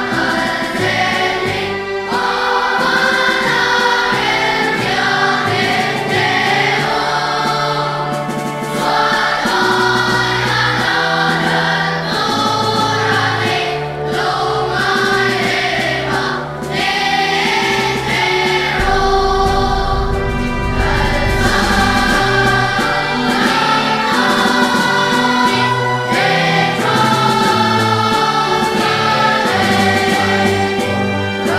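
Children's choir singing a hymn in Mizo, many young voices together, over instrumental accompaniment with a stepping bass line.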